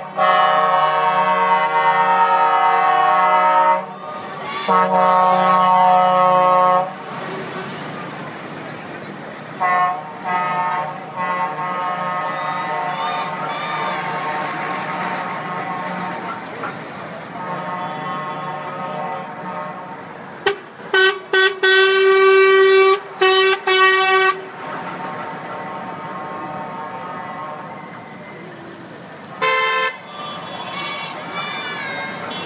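Heavy trucks in a passing convoy sounding their multi-tone air horns. Two long loud blasts open the stretch, fainter honks follow, and a burst of short, loud toots comes about two-thirds of the way through. Truck engines and crowd noise run underneath.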